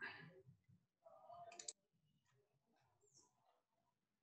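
Near silence on a video call: faint room tone, with a couple of brief faint sounds in the first two seconds.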